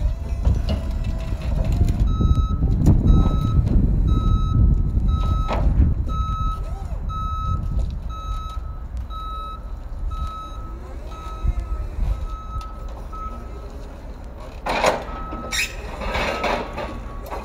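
Forklift's reversing alarm beeping about twice a second for roughly eleven seconds over its running engine. Near the end a loud clatter, and the beeping starts again.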